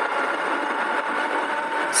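Ariel Rider X-Class e-bike's electric motor running at full throttle on a 72-volt Phaserunner controller: a steady whine of a few held tones over an even rush of road and wind noise.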